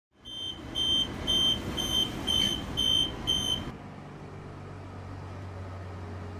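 Suburban electric train's door warning beeper sounding seven short high beeps, about two a second, over the rumble of the train, as the doors are about to close. The beeps stop a little past halfway, leaving the train's steady low hum.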